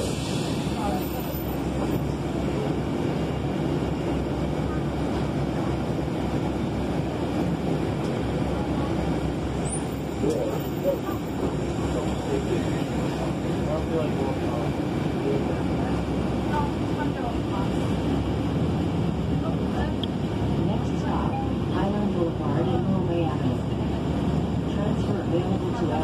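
Inside a city bus: steady engine and cabin rumble while the bus stands at a stop, then gets under way in the second half, with indistinct passenger voices in the background.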